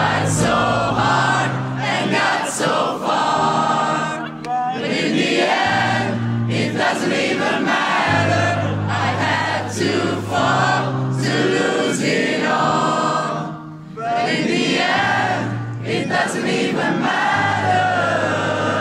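Large concert crowd singing together in unison, sounding like a choir, over long sustained low keyboard notes, the phrases broken by short pauses.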